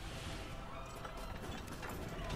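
Faint low rumble with light, quick clattering from an anime soundtrack's action scene.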